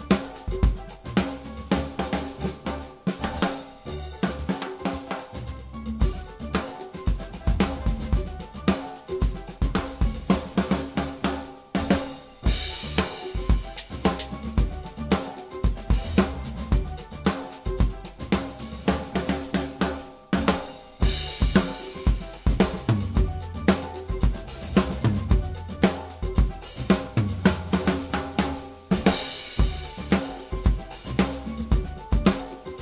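A drum kit played with sticks in a steady groove of bass drum, snare and hi-hat. Crash-like cymbal washes come about twelve seconds in, again about twenty-one seconds in, and near the end.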